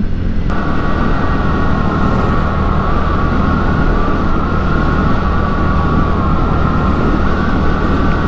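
A 125 cc scooter ridden at about 50 km/h: steady engine and road noise with wind buffeting the microphone, and a steady high whine that cuts in about half a second in.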